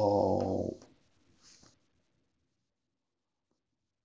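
A man's long, drawn-out 'oh' held on one pitch, ending under a second in, followed about half a second later by a brief faint rustle.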